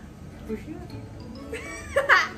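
Women laughing softly with low voices, then a high-pitched laughing cry that bends up and down near the end.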